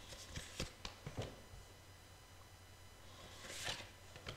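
Tarot cards being handled on a cloth-covered table: a few light taps and snaps in the first second or so, then a short papery swish of cards near the end.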